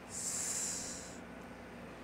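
A man's sharp hiss of breath through clenched teeth, lasting about a second and cutting off abruptly, over faint room tone.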